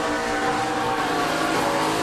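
NASCAR Cup stock car's V8 engine heard from its in-car camera, running at a steady note that drops to a lower pitch about a second in as the car comes up on a wreck.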